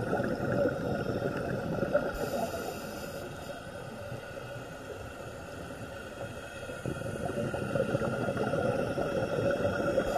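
Underwater sound picked up by a diver's camera: a dense, steady crackle under a constant hum, easing a little mid-way and swelling again in the last few seconds.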